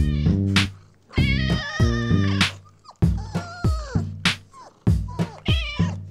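Music with a plucked bass line, with a domestic cat's meows laid over it: one long held meow about a second in, then several short falling meows.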